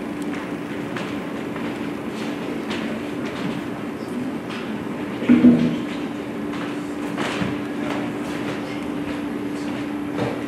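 Steady hum over a rumbling noise, picked up by a handheld microphone as it is passed to an audience member, with a brief bump a little after five seconds.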